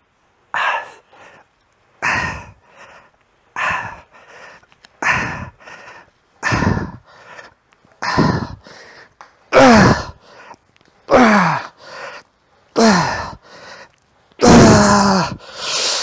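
A man breathing out forcefully with each rep of a cable rope exercise, about every second and a half, each breath followed by a quick breath in. The later breaths become louder strained groans that fall in pitch as the set gets harder.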